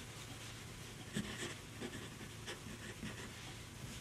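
Steel Sailor Music (MS) fountain pen nib writing on paper: a few faint, short scratching strokes as a word is written. The steel nib glides a little roughly, audible in the scratch of the nib on the paper.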